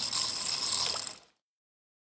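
Fishing reel spinning with a rapid ratchet-like clicking, which stops a little over a second in.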